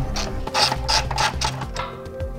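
Socket ratchet clicking in quick strokes as it backs out a bolt holding an exhaust hanger to the frame rail. There is background music underneath.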